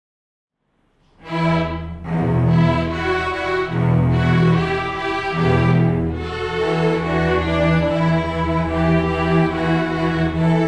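A string orchestra of violins, cellos and double basses starts playing about a second in, loud and full, with strong low cello and bass notes and brief breaks between phrases.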